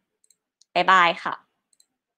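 A woman's voice saying goodbye in Thai ('bye ka') once, with a few faint clicks before and after the words.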